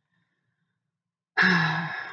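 A woman sighing once, a long breathy exhale with a little voice in it, starting about a second and a half in.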